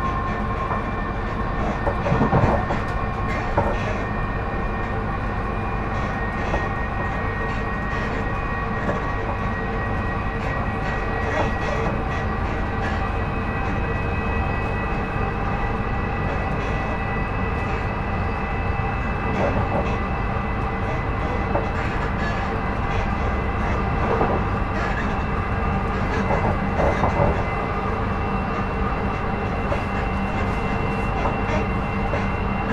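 Interior running noise of a Class 458/5 electric multiple unit at speed: a steady rumble of wheels on rail with a steady electric traction whine in several pitches. A few clacks come from the wheels over rail joints, the loudest about two seconds in.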